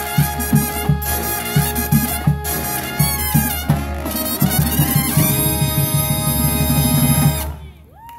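A brass and saxophone band with sousaphones and drums playing an upbeat tune with regular drum hits. It ends on a long held chord that stops about seven and a half seconds in.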